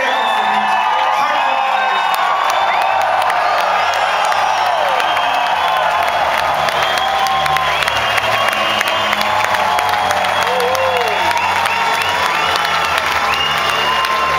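A large crowd cheering, whooping and shouting, steady and loud, with music playing underneath.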